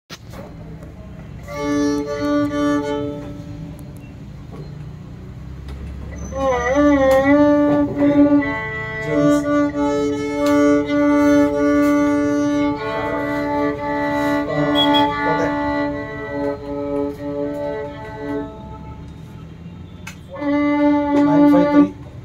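Solo violin bowed in a slow phrase of long held notes, with wide wavering vibrato and slides between notes. It breaks off shortly before the end, then plays one more held note.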